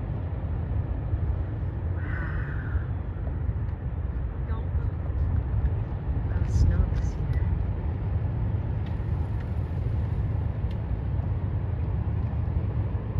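Steady low rumble of wind buffeting a phone's microphone outdoors, with a brief higher sound about two seconds in.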